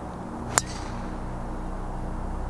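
A golf club strikes a teed-up ball with a single sharp crack about half a second in, over a steady hiss and soft background music.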